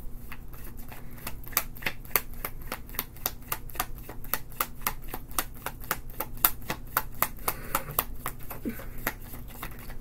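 Tarot deck being shuffled by hand: a quick, even run of crisp card clicks, about four to five a second, that stops near the end.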